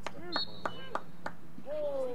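Lacrosse sticks striking in a quick series of about five sharp clacks, roughly three a second, one leaving a brief metallic ring. Players or onlookers shout around the clacks, with a falling yell near the end.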